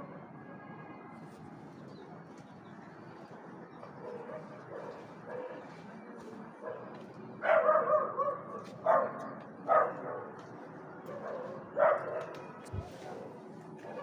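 A dog barking: a few short barks in the second half, after a quiet start.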